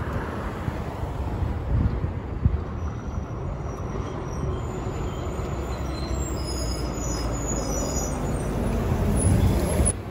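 Street traffic rumbling: a car passes, then a city transit bus approaches and its engine grows louder toward the end, before the sound drops sharply at the very end.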